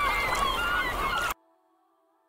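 Many birds calling at once, short overlapping gliding calls over a steady noisy wash, sampled at the end of an electronic track. About a second in it cuts off abruptly, leaving only a faint held synth chord.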